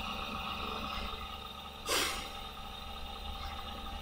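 Steady room tone with a faint electrical hum, broken about halfway through by one short, noisy breath through the nose.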